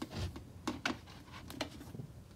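Light handling noise of plastic parts: a few short clicks and taps as hands work the siphon's PVC bulkhead fitting and O-ring against a clear plastic grow tray.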